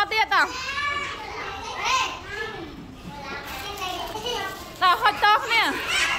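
A group of young children chattering and calling out together during a classroom game, with a louder single voice speaking briefly at the start and again about five seconds in.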